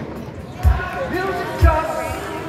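Live band in a stripped-down passage: the kick drum pounds a steady beat about once a second, with held notes and a voice between the beats.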